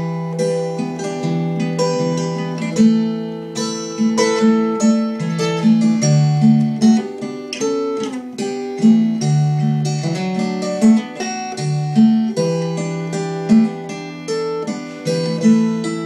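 Capoed acoustic guitar playing an instrumental intro: picked chords in a steady, even rhythm, with no singing yet.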